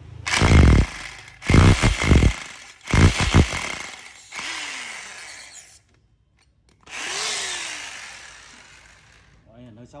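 German-made 720 W corded electric drill boring into a wooden block in three short, loud bursts. It is then let run down with a falling whine, and after a pause of about a second it is triggered again and coasts to a stop.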